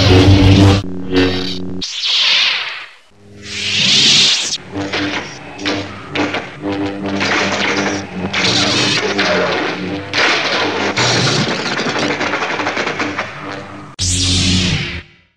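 Lightsaber sound effect: a low buzzing hum with whooshing swings that swell up twice in the first few seconds, then a dense, continuous run of hum and swings.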